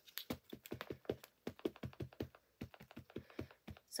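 Versafine Clair ink pad being dabbed quickly and repeatedly onto a rubber stamp to ink it: a run of light, uneven taps, several a second.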